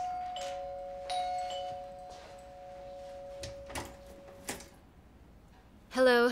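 A two-tone doorbell chime rings: a ding-dong, with the higher note struck again about a second in and the lower note ringing on and fading away over about four seconds. A few soft thuds follow near the end.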